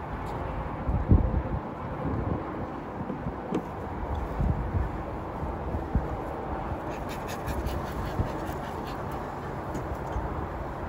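Honeybees buzzing steadily around an open hive, with several gusts of wind rumbling on the microphone. Near the end comes a run of light clicks from the wooden hive frames being handled.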